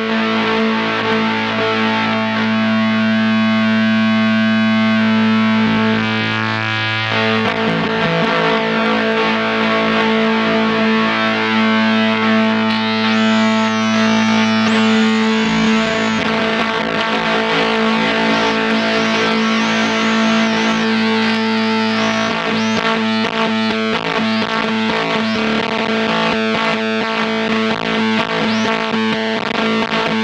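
Electric guitar played through a Bliss Factory two-germanium-transistor fuzz. It opens on one low note held for about seven seconds, then moves into busier, changing playing with high whistling tones gliding in pitch.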